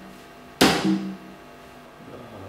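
A sudden loud burst of noise close to the microphone, the loudest sound, followed at once by a man's short closed-mouth hum, 'mmh'.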